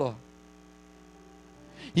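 The tail of a man's spoken word, then a faint steady hum in the pause, several level tones held without change, until speech starts again at the very end.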